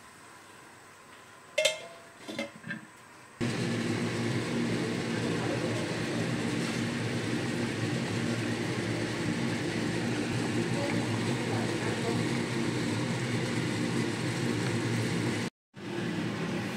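Fish curry boiling in a wok on a gas stove, heard as a steady hum and rush that starts abruptly a few seconds in. Before it there is a quiet stretch with one sharp click and a few light taps.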